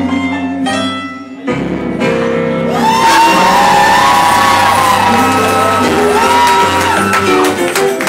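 Live blues performance: a female singer backed by electric guitar in a club room. About three seconds in it swells much louder, with long held sung notes and shouts over the band.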